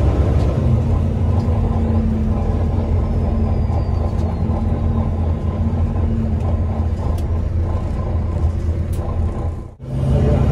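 Volvo B9TL double-decker bus under way, heard from inside the lower deck: a steady low drone from its six-cylinder diesel engine mixed with road noise. The sound dips out briefly just before the end.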